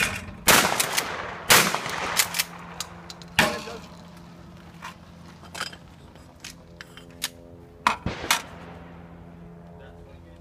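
Shotgun shots, one of them a 20 gauge, on a skeet range: sharp reports about half a second in and again a second later, another a couple of seconds on, and a close pair near the end, each ringing out briefly over a steady low hum.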